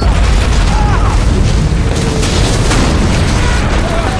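A loud explosion blast goes off right at the start and rumbles on as a wall blows apart, with score music beneath.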